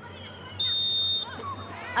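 Referee's whistle: one short, shrill blast of about two-thirds of a second, blown to stop play for a foul.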